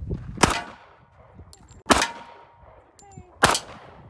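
Three gunshots, evenly spaced about a second and a half apart, each with a short echo.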